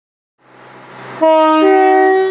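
Two-tone horn of a Class 170 Turbostar diesel multiple unit sounded as it departs: a loud low note comes in about a second in, and a higher note joins it a moment later, both held on. Before the horn, the train's running noise rises.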